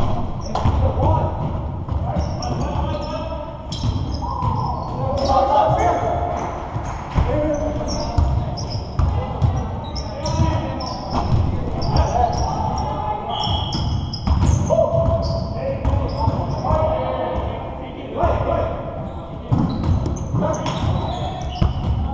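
Basketball bouncing on a hardwood gym floor, with sneakers squeaking and players calling out indistinctly, echoing in a large hall.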